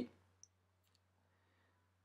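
Near silence: room tone with a steady low hum, and one or two faint small clicks within the first second.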